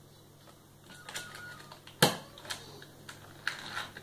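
Crayons clicking and rattling against a crayon cup and a plastic table as they are handled, in scattered taps, with one sharp knock about halfway through.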